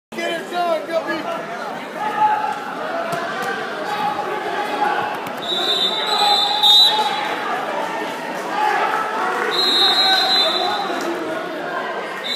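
Voices and crowd chatter echoing in a large gymnasium, with scattered thumps. Two long, high-pitched referee whistle blasts sound about halfway through and near the end.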